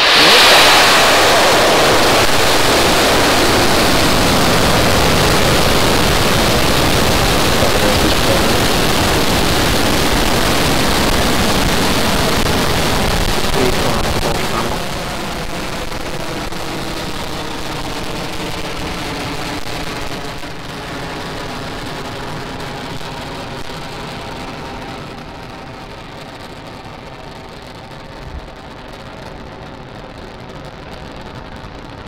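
Falcon 9 first stage's nine Merlin 1D rocket engines at liftoff: a loud, steady roar that starts abruptly at ignition, drops suddenly about halfway through, then fades slowly as the rocket climbs away.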